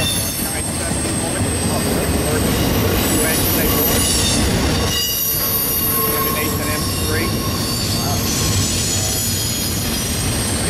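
Freight train of double-stack intermodal well cars rolling past close by: a steady rumble of steel wheels on rail, with thin high-pitched wheel squeals that come and go.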